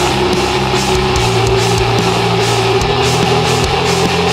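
Black metal song played by a full band: distorted electric guitars over bass and drums, loud and dense, with a sustained guitar line held throughout.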